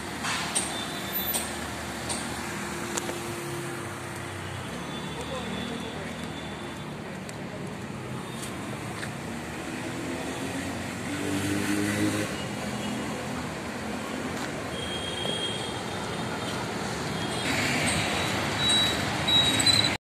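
Urban road traffic: car and auto-rickshaw engines and tyres passing steadily, getting louder toward the end, with a couple of short horn toots.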